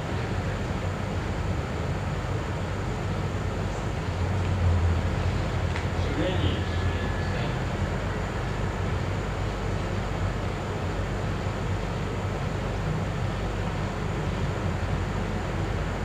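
Steady background hum and hiss of a room recording, with faint voices now and then.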